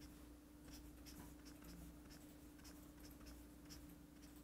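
Faint short strokes of a felt-tip highlighter rubbing across a book's paper page, several irregular strokes in a row, over a faint steady electrical hum.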